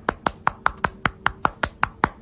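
Rapid, even slapping of skin on skin, about ten slaps a second: the sound of thrusting bodies.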